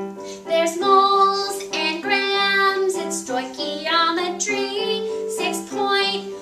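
A girl singing a musical number into a microphone over a piano accompaniment, in a small room.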